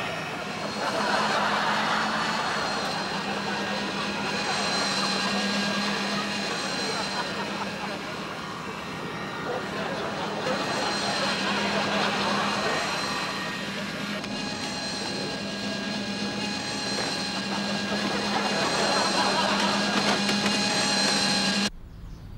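Small electric motor of a remote-control toy boat whining steadily on the water, its pitch constant while it swells and fades every few seconds as the boat moves about. It cuts off abruptly near the end.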